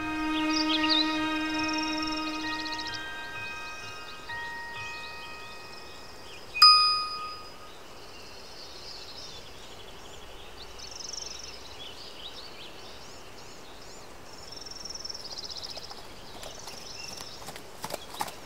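Held orchestral string notes fade out over the first few seconds. Then a single bright chime rings out about six and a half seconds in, the loudest sound, dying away over about a second, over a soft outdoor night ambience with faint high chirps.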